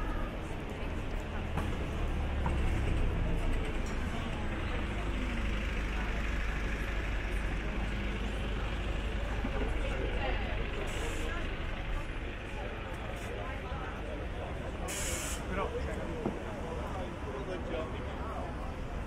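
Street ambience with a bus's engine rumbling close by, heaviest through the first twelve seconds and then easing. A short, sharp hiss of air brakes comes about fifteen seconds in, and passers-by talk throughout.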